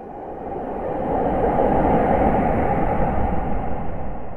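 Cinematic intro sound effect: a noisy, rumbling swell that builds over the first second or so, holds, and begins to fade near the end.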